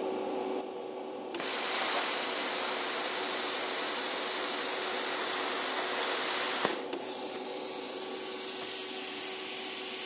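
Plasma cutter arc cutting metal with a loud, steady hiss, starting about a second in. Near seven seconds in the arc goes out at once as the trigger is let off, and a softer hiss of air post-flow keeps running to cool the torch.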